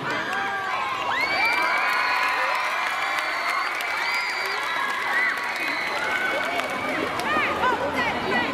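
A large crowd of schoolgirls cheering and screaming, many high voices overlapping in long rising and falling whoops that swell about a second in and thin out near the end.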